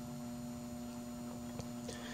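Faint, steady electrical hum from a running battery charger and PWM-driven coil circuit, with a couple of faint ticks.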